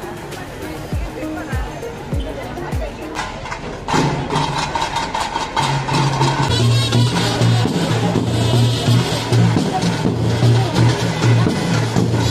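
Crowd voices, then about four seconds in, loud festival procession music starts: rapid drumming over a deep steady bass.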